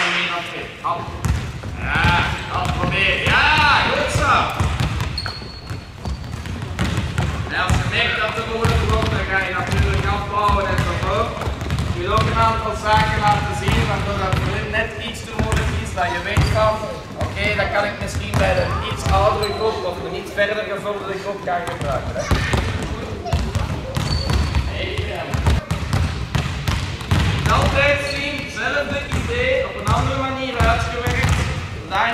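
Volleyballs bouncing again and again on a sports-hall floor as children throw them up and catch them, with children's voices chattering throughout, all echoing in the big hall.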